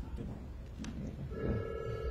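A brief electronic warbling buzz, about half a second long, in the second half, over low room rumble.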